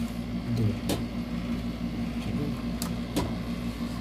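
Two sharp clicks, about a second in and near three seconds in, from handling the plastic instrument cluster housing, over a steady low electrical hum.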